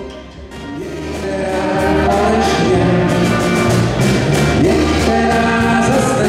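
A live dance band playing a song with singing over a steady beat. The music dips low just after the start and swells back to full level within about two seconds.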